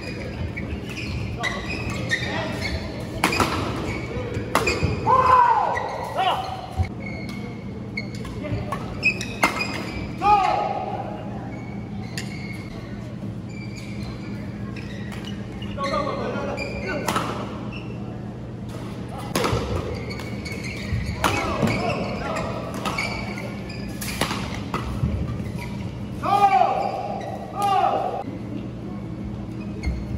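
A badminton doubles rally: sharp racket strikes on the shuttlecock in quick, irregular succession, mixed with sneakers squeaking on the court mat. The sounds ring in a large hall over a steady low hum.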